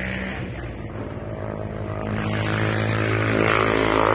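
An engine running steadily, getting louder about halfway through.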